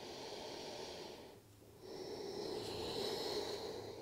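A woman breathing slowly and deeply: one breath of about a second, a short pause, then a longer breath of about two seconds.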